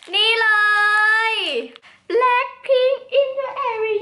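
A young woman's high, sing-song voice holding one drawn-out exclaimed word for about a second and a half with a falling end, then a few shorter phrases.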